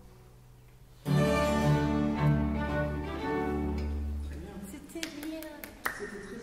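Baroque string orchestra playing sustained chords over a deep bass line. It comes in about a second in after a brief hush and fades away near the end.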